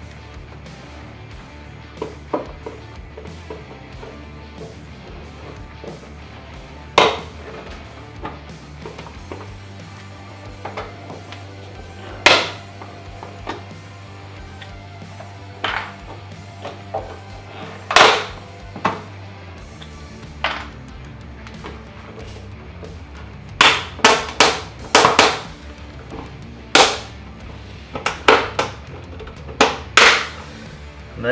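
Sharp plastic clicks and snaps as a trim removal tool pries the plastic retaining tabs of a Lexus GX470's running board out of their holes. They come one at a time every few seconds, then as a quick run of several snaps about two-thirds of the way through. Quiet background music with a low bass line plays underneath.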